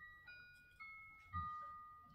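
Faint chime: a short run of clear, bell-like ringing notes, about one every half second, each a little lower than the last. A soft low knock comes about a second and a half in.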